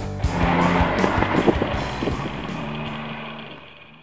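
Triumph Rocket 3 motorcycle running past at speed under background music, then fading away; both sounds die out near the end.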